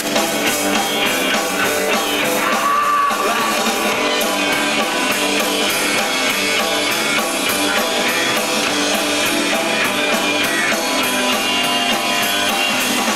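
Live rock band playing: electric guitar, bass guitar and drum kit, loud and continuous, with little low bass in the recording.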